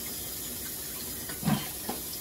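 A steady, even hiss, with a brief vocal sound about one and a half seconds in.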